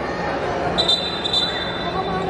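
Basketball game in a gym: crowd chatter and court noise, with a referee's whistle held steady for about a second, starting just under a second in.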